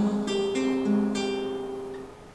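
Acoustic guitar playing a short run of single plucked notes, about four, each left ringing, the sound fading away toward the end.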